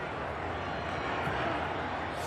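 Steady stadium crowd noise heard through a TV football broadcast, an even wash of sound with no clear voices standing out.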